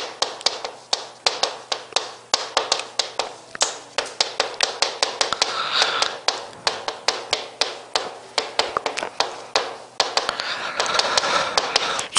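Chalk writing on a chalkboard: a quick, irregular run of sharp taps, several a second, as each stroke of the characters hits the board, with short stretches of scratching.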